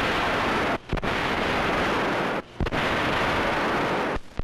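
Loud, even rushing noise in three long bursts with brief breaks between them, each starting and stopping abruptly.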